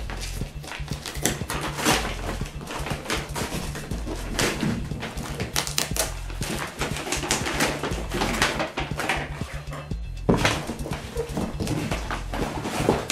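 Brown paper packing wrapped around a cardboard appliance box being handled and pulled away, giving a run of irregular crinkling rustles with a few louder crackles. Background music with a bass line plays underneath.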